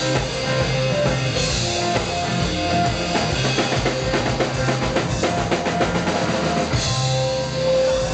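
Live rock band playing: drum kit, electric guitar and sustained keyboard-like tones. There is a cymbal crash about a second and a half in and another near the end, with a busy run of drum hits in between.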